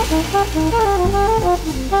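Jazz trio playing: a saxophone runs a quick up-and-down melodic line of short notes over double bass and drums.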